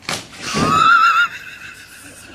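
A slap as a large fish is swung into a man's face, followed by a loud, high, wavering human cry lasting under a second.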